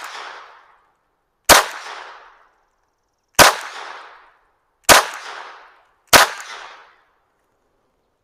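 Walther P22 .22 LR pistol firing four single shots, spaced about one and a half to two seconds apart. Each shot is a sharp crack with a short echo that dies away within about a second.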